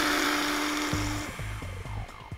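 Whoopee-cushion screamer blowing a steady buzzing raspberry over a rush of air, which stops about a second and a half in. Background music with a low beat comes in about a second in.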